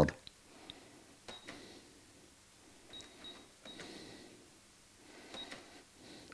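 Electronic pocket calculator beeping faintly as its keys are pressed with a pencil tip: five or so short, high beeps at uneven intervals.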